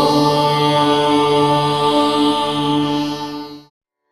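Devotional chant music with one long note held steady over a low drone, cutting off sharply shortly before the end.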